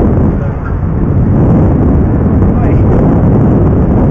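Strong wind buffeting the camera microphone: a loud, steady low rumble that dips briefly about half a second in.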